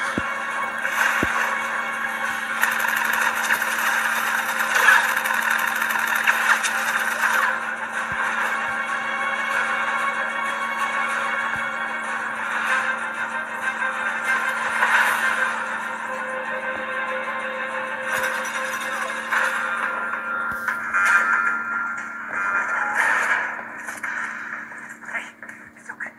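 A film soundtrack playing from a laptop's small speakers and re-recorded in the room: steady, drone-like music.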